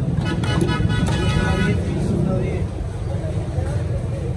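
Steady street traffic rumble, with a held pitched tone lasting about a second and a half near the start.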